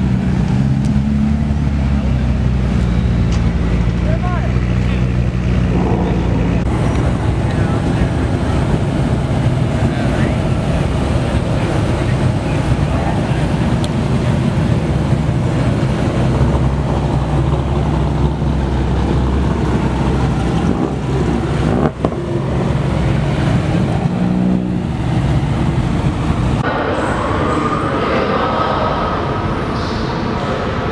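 Supercars pulling slowly out of a car meet with people talking around them. At first a McLaren 675LT's twin-turbo V8 runs with a steady low hum, and later a Lamborghini Diablo roadster's V12 drives past. The sound changes abruptly twice in the last third.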